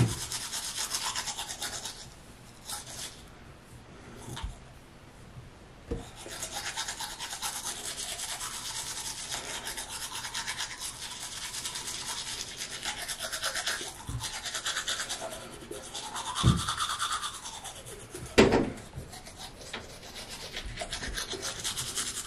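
Manual toothbrush scrubbing teeth, a steady back-and-forth brushing that drops off for a few seconds about two seconds in. A couple of short knocks come in the second half.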